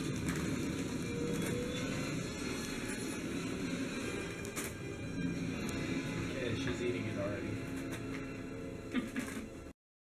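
Indistinct background voices and music at a moderate level, with no clear words. It cuts off abruptly just before the end.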